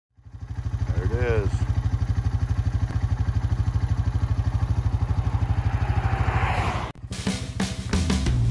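Vehicle engine idling with a steady low, evenly pulsing throb, with a short rising-then-falling tone about a second in. It cuts off abruptly near the end, and music with drums and guitar takes over.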